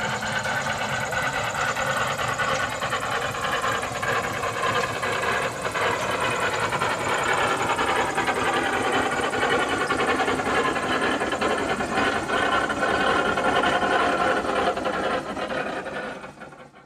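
An engine running steadily, a loud, continuous mechanical rattle with no change in speed.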